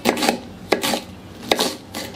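A kitchen knife slicing through green onion stalks onto a wooden cutting board, in three short cuts about three-quarters of a second apart.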